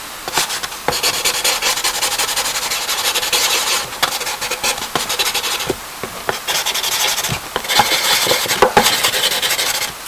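Charcoal scratching across paper in quick back-and-forth shading strokes, in several runs with short pauses.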